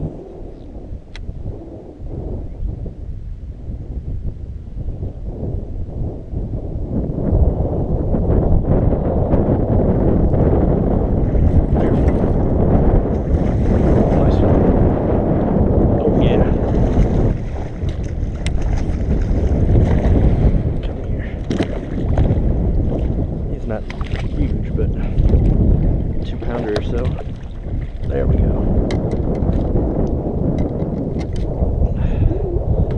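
Wind buffeting the microphone, a heavy rumble that builds about six seconds in and stays loud, with scattered brief clicks and knocks over it.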